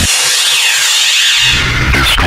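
Frenchcore DJ mix at a breakdown: the pounding kick drum drops out and a bright, hissy synth sweep with pitch gliding up and down fills the highs, with the low bass coming back in about a second and a half in.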